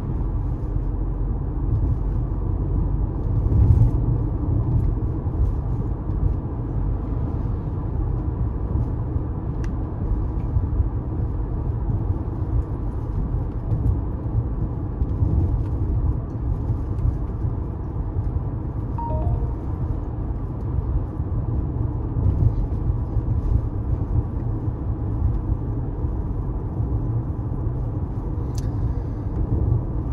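Car driving, a steady low rumble of engine and road noise with no break.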